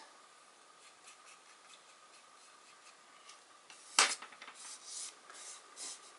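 Paper and card pieces handled on a craft table. Mostly quiet, then a sharp tap about four seconds in, followed by light rubbing and rustling.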